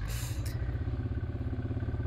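Sherp ATV's diesel engine running steadily at low speed with an even, rapid throb as the vehicle pushes into brush.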